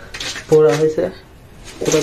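A voice calls out a drawn-out "oh" from about half a second in to about one second in. Faint light clinks and clicks sound around it.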